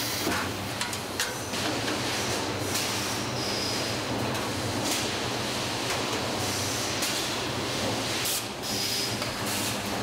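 Car-body welding shop floor noise: a steady machinery hum with short air hisses and a few sharp clicks, the loudest of them about a second in and around eight and a half seconds in.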